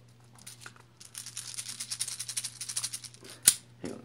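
Plastic airsoft BBs rattling as they are loaded into an airsoft pistol's magazine: a dense run of quick, light clicks for about two seconds, then a single sharp click.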